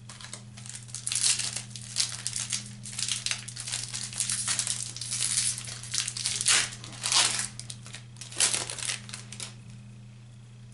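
Plastic wrapper of a baseball trading-card pack being torn open and handled, a run of irregular crinkling and crackling that stops about half a second before the end.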